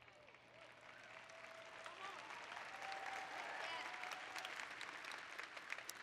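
A large audience applauding, the clapping swelling to its fullest in the middle and then dying away, with a few voices calling out in the crowd.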